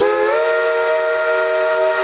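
Steam locomotive whistle blowing a chord of several notes at once. It comes in sharply with a brief upward slide in pitch as it opens, then holds one steady, sustained chord.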